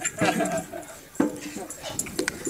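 Indistinct voices of people talking in the background, with a sharp click a little over a second in.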